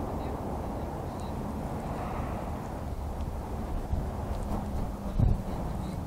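Steady low background rumble of an outdoor car lot, with one brief thump about five seconds in.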